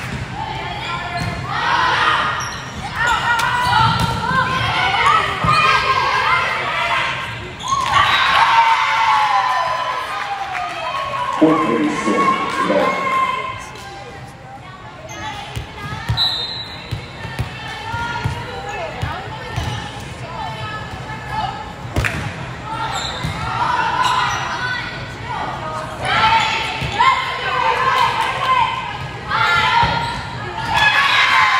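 Indoor volleyball play in a gymnasium: the ball smacked on serves and passes, mixed with players calling out and spectators shouting.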